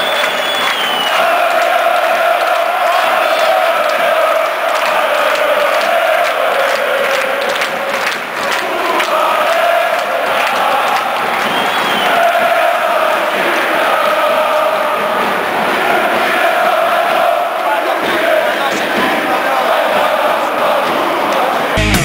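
A large crowd of football supporters chanting in unison in the stands, a steady, loud mass of voices holding long sung notes.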